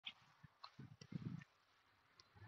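Near silence with a few faint, short low thuds clustered about a second in, and a couple of faint clicks.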